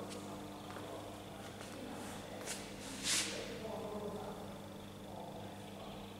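Room tone with a steady electrical hum, faint distant voices murmuring, and one brief sharp hiss about three seconds in.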